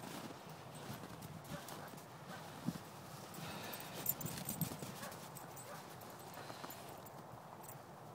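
Footsteps on thin snow, soft and irregular, with a few sharper knocks about three to five seconds in.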